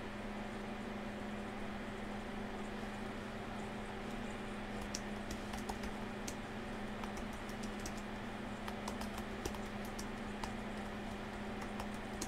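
Typing on a computer keyboard while writing a message reply: scattered keystroke clicks, coming thicker from about five seconds in, over a steady low hum.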